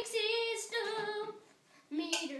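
A boy singing unaccompanied, holding long, steady notes, with a short pause near the end before the next line begins.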